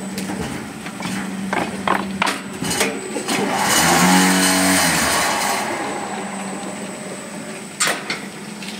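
Fly ash brick making machine running: a steady hum with several sharp knocks of its mechanism in the first three seconds. About three and a half seconds in, a loud swell of machine noise rises and dies away over about two seconds.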